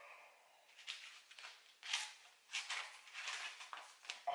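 Faint, scattered rustling and handling noises: several short soft scuffs over a few seconds, with no voice.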